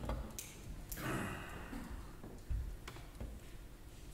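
Quiet room tone with a few scattered clicks and a short rustle in the first second or so, and a low thump about two and a half seconds in, from people shifting as they raise their hands.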